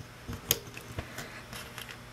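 A few small, sharp clicks and taps as rubber bands are stretched and snapped onto the plastic pegs of a Rainbow Loom. The loudest click comes about half a second in, another about a second in, with fainter ticks between.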